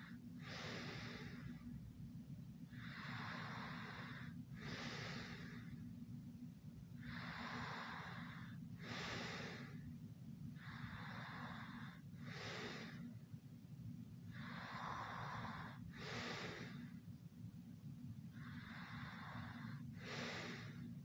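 Slow, heavy breathing of someone asleep, about one breath every four seconds. Each breath is a longer noisy draw followed by a shorter, sharper puff. A steady low hum runs underneath.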